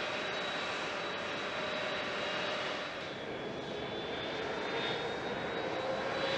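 Turbofan engines of a C-5 Galaxy transport running on the ground: a steady rushing noise with a steady high whine over it.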